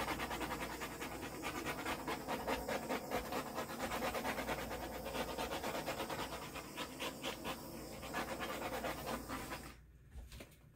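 A dog panting quickly and steadily, several breaths a second, until it cuts off suddenly near the end.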